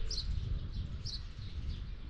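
A small bird chirping outdoors: two short, high, falling chirps about a second apart, over a low steady rumble.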